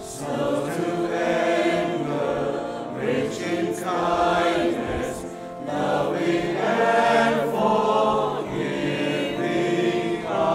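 Mixed choir of women's and men's voices singing in several parts, in phrases that swell and ease off with brief breaks about four and five and a half seconds in.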